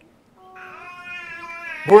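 A small child's voice making one drawn-out, steady call of about a second and a half, quieter than the preaching. Near the end, a man's voice comes in loudly.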